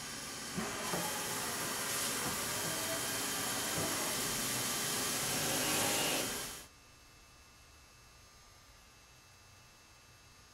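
Haas CNC mill machining a billet aluminum engine-block girdle: a steady hissing machine noise that cuts off abruptly about six and a half seconds in, leaving only a faint low hum.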